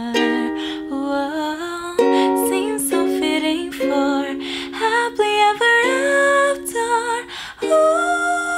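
A woman singing over her own ukulele strumming, holding long notes and sliding between them while the chords change every second or so.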